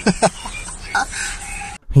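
Short, sharp vocal sounds from people inside a car, picked up by a phone microphone, followed about a second in by a brief steady tone.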